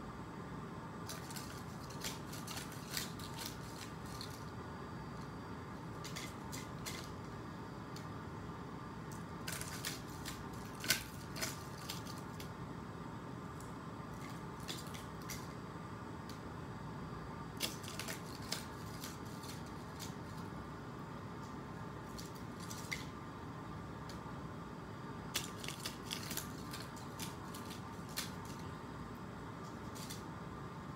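Scattered light clicks and clinks of paper clips and the rustle of paper cutouts as a battery-powered nail electromagnet picks them up and drops them into a plastic basket, in irregular clusters over a steady hum.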